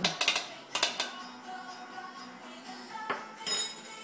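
A metal tablespoon tapping several times against a plastic funnel in the first second, knocking baking soda down into a balloon, then a sharp metallic clink with a brief ring near the end as the spoon is set down on the table. Faint music plays underneath.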